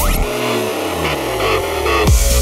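Electronic dance music in a short break: the kick drum drops out after a rising sweep, and a deep bass tone glides downward for about a second and a half before the four-on-the-floor beat comes back at the end.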